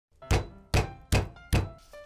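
Four heavy thuds, evenly spaced about 0.4 s apart, each dying away quickly, laid over background music with held tones.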